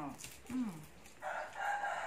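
A rooster crowing: one long held call that starts a little after halfway and runs on past the end.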